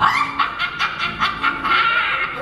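A high voice sweeps up and holds a long wailing, whimper-like note over short, evenly repeated strikes about five a second.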